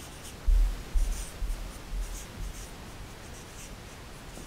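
Felt-tip marker rubbing and tapping against a paper flip-chart pad, with a few low bumps in the first two and a half seconds, then quiet room tone.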